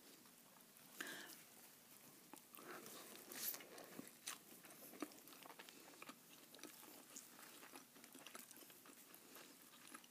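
Close-miked biting and chewing of a bacon-and-jalapeño thick burger on a soft bun: quiet mouth sounds with small scattered clicks and crunches.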